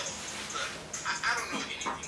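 Cartoon soundtrack with an animated dog's vocal sound, a whine falling in pitch near the end, among other voices.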